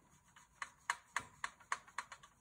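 Flat paintbrush tapping and clicking against a plastic watercolour palette while mixing paint: a run of light taps, three or four a second, starting about half a second in.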